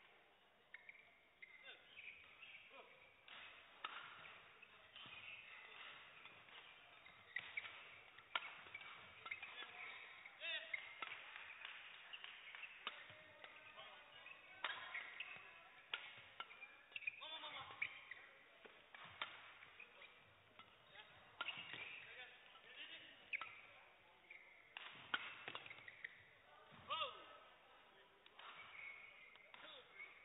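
Faint badminton doubles rally: racquets hitting the shuttlecock in an irregular run of sharp cracks, with shoes squeaking on the court floor.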